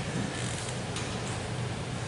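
Steady room noise in a large hall, a low even hiss with no speech.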